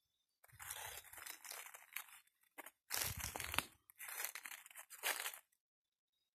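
Dry leaf litter and dead palm fronds crunching and rustling as someone moves through them, in three bursts of one to two seconds each.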